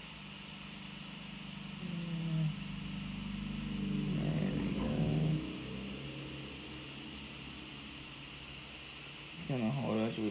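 A man's voice humming low, drawn-out tones under his breath, shifting in pitch and loudest about four to five seconds in, then fading into faint steady room hum before he starts talking again near the end.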